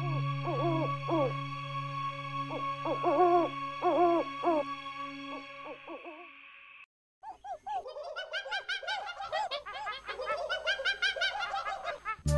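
Cartoon owl hoots in short groups over a held soft music chord that fades out. After a moment of silence, a denser run of quicker rising-and-falling hooting calls follows.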